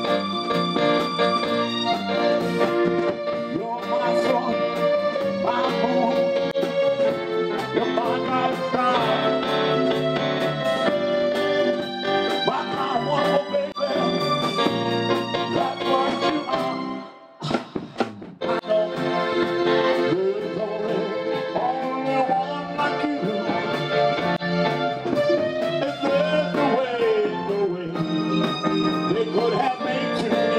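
Live soul band music led by a keyboard played with an electronic organ sound, holding sustained chords and melody lines. The whole sound drops out briefly a little past halfway, then resumes, with notes bending down in pitch near the end.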